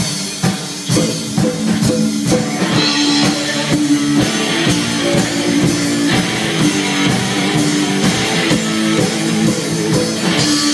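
A live rockabilly trio playing an instrumental passage: slapped upright bass, electric guitar and drum kit keeping a steady, driving beat.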